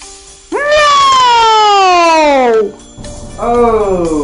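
A loud sound effect of two long tones sliding downward in pitch. The first lasts about two seconds and the second is shorter and starts about three seconds in.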